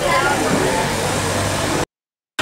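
Steady outdoor street noise of traffic and voices, cut off suddenly just before the end.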